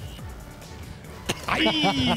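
Faint background music with a single sharp knock just over a second in, followed by a man's loud exclamation.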